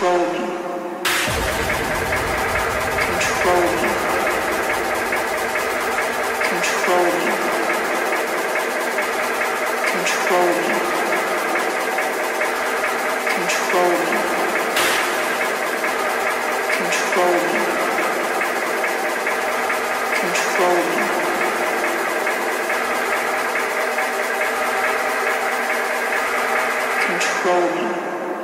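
Hard techno in a breakdown. The kick drum and bass drop out about a second in, leaving a sustained synth layer with a short motif that repeats about every three and a half seconds. The beat comes back just at the end.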